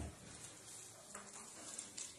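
Faint rustle of thin Bible pages being turned by several people at once.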